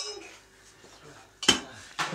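Metal clanks: a clank just before the start rings off quickly, then a second sharp clank comes about one and a half seconds in, with faint rattling between.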